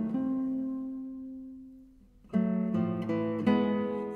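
Classical guitar playing alone: a plucked chord rings and fades away over about two seconds, then after a short gap a new series of plucked notes and chords begins.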